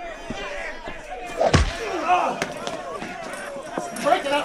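Film fight soundtrack: voices yelling over a scuffle, with one heavy slam about a second and a half in and a few lighter knocks.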